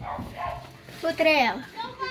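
A girl's short, loud excited cry without words, its pitch sliding sharply downward, about a second in; a softer voice sound comes just before it.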